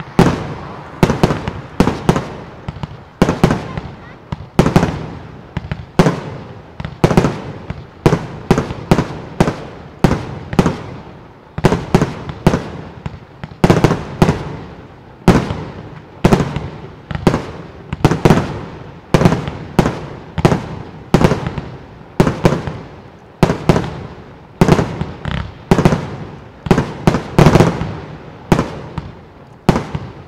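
Display fireworks being fired in a rapid, steady run of sharp bangs, about two a second, each with a short echoing tail, as shots launch from the ground and burst overhead.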